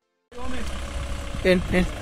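Low, steady rumble of a four-wheel-drive vehicle's engine running slowly on a muddy track. It starts about a third of a second in, after a moment of silence, and a man calls "hey" near the end.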